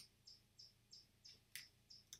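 Near silence, with faint high-pitched chirps repeating about three times a second. A single mouse click sounds at the very start.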